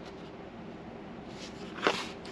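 Faint handling noise of a fabric-covered cardboard journal cover being moved on a cutting mat, with one short sharp knock near the end.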